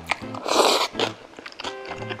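Someone eating tofu soy-milk noodles: one loud, noisy mouthful lasting under half a second about halfway through, with a couple of short clicks, over background music.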